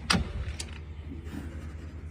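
A sharp click as the Mercedes S-Class driver's door swings open, then a fainter click about half a second later, over a low steady hum.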